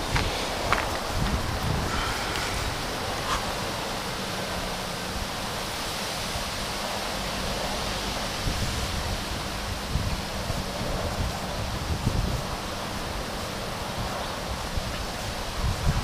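Steady outdoor background hiss, with wind buffeting the microphone in several brief low rumbles.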